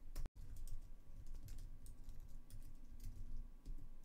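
Typing on a computer keyboard: a run of irregular key clicks as a command is entered, with a brief dropout to silence about a third of a second in.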